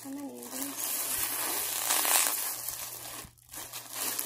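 A bag crinkling and rustling as skeins of yarn are taken out of it, loudest a little past halfway, after a brief murmur of voice at the start.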